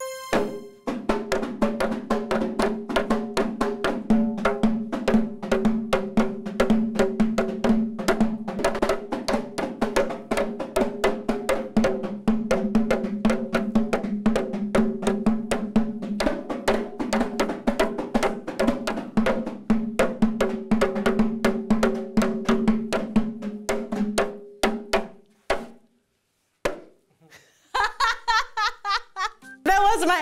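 Several kompang, Malay hand-beaten frame drums, played together in an interlocking rhythm of three parts: the basic beat (melalu), the off-beat (menyelang) and the third beat (meningkah). A fast, steady stream of hand strikes that stops about 25 seconds in, followed by a few single strikes.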